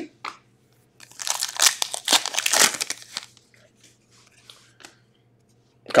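Trading cards and pack wrapping being handled: a crinkling rustle starting about a second in and lasting about two seconds, with a few light ticks after it.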